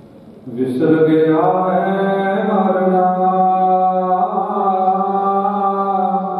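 A man chanting gurbani into a microphone: about half a second in his voice slides up into one long, steady held note.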